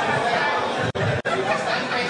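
Audience in a hall laughing and chattering in reaction to a joke. The sound cuts out twice very briefly about a second in.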